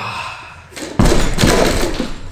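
A 160 kg barbell loaded with rubber bumper plates comes down from the top of a deadlift and hits the gym floor about a second in. There is a heavy thud, then the plates knock and clatter for most of a second as they settle.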